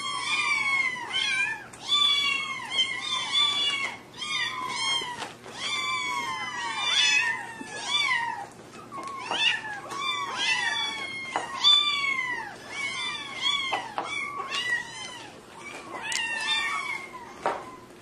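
Several kittens mewing over and over. The calls are high-pitched and arch up, then fall in pitch. They often overlap, a few each second.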